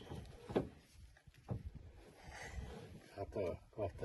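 A few faint knocks and low rumbling from a hand crank winding down a caravan's corner steady leg, with a voice speaking briefly near the end.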